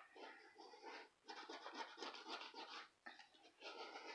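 Faint rapid scraping strokes as the coating is scratched off a scratch-off lottery ticket, coming in runs with brief breaks about a second in and near three seconds.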